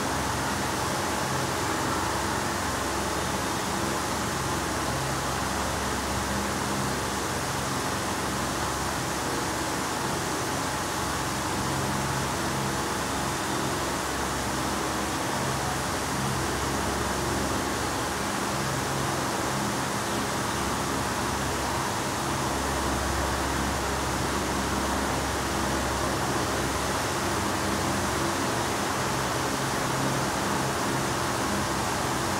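Steady, even hiss of room noise with a faint low hum underneath, unchanging throughout.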